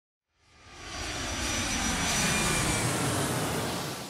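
Jet aircraft passing overhead: a rushing engine noise with a faint high whine that swells in over the first second, peaks in the middle and fades away near the end.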